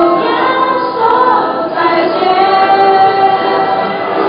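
Mixed school choir of boys and girls singing together, several voices holding long notes in the second half.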